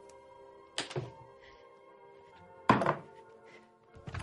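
Light background music fading out, with two dull thuds. The first comes about a second in, and a louder one near three seconds in.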